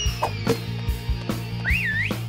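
Cartoon whistle sound effect, over background music: a whistle that shoots up in pitch and then slowly slides down, followed near the end by a short wobbling whistle.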